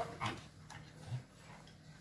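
Pembroke Welsh corgi chewing a small dry treat taken from a hand: a few short, quiet crunches about half a second apart.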